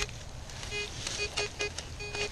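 Metal detector giving short beeps over a dug target, about five in quick, uneven succession, with a spade scraping and cutting into the soil.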